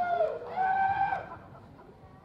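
High-pitched, drawn-out crowing calls like a rooster's, several in a row, each bending slightly in pitch, stopping about a second and a half in.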